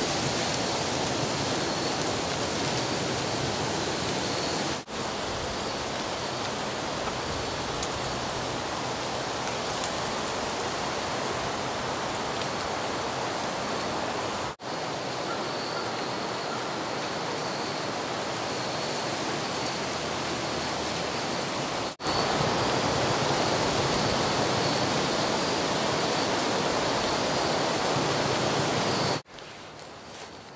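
Steady rushing of a clear stream running over shoals and rapids, an even wash of water noise broken by a few brief dropouts.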